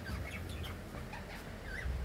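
Budgerigars chirping faintly, in short scattered chirps.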